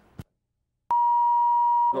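A loud, steady electronic test tone on the recording: a single unchanging beep that starts abruptly about a second in, after a click and a moment of dead silence, as a new tape segment begins. A voice starts over the tone near the end.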